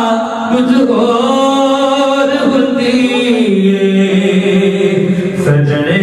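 A man recites a naat, a devotional song, solo into a microphone. He holds long notes that slide slowly in pitch, in a chanting style.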